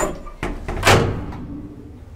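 Elevator door shutting: a couple of knocks, then a loud bang about a second in that rings on briefly. A low steady rumble follows.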